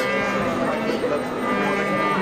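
Many voices chanting together in a temple hall, with long held notes.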